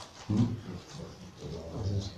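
A man's short questioning "hmm?", then faint, intermittent low vocal sounds.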